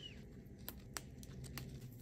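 Faint rustling of molokhia (jute mallow) leaves, with a few soft clicks as the leaves are picked and snapped off their stems.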